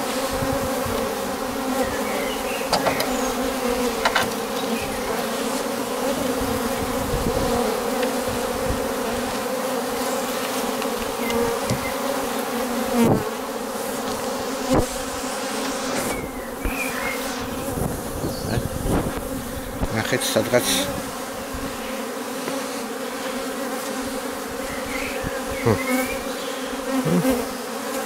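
Honeybees humming at a busy hive entrance: many bees flying in and out close to the microphone make a steady buzz, with louder swells as single bees pass near and a few sharp ticks.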